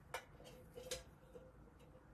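Two faint light clicks, about three-quarters of a second apart, as an old metal tray is handled, over a faint steady hum.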